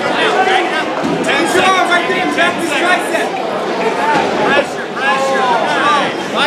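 Crowd chatter: many voices talking over one another at once.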